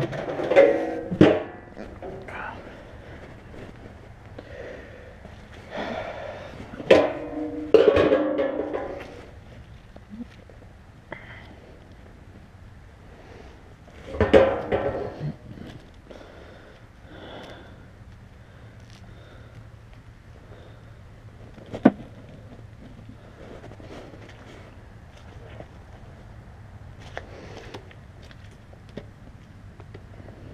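Galvanized metal trash-can lids clanking and knocking several times, sharp and spread out, with stretches of rustling and rattling as horse feed pellets are scooped out of the cans.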